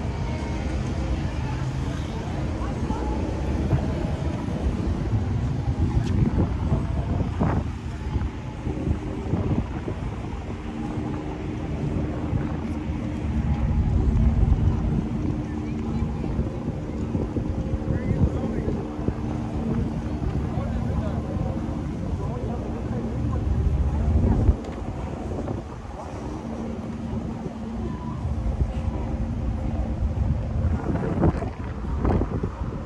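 Wind buffeting the phone's microphone in gusts, over a steady low hum and city traffic. The gusts swell strongest about halfway through and again near the end, then drop off suddenly about five seconds before the end.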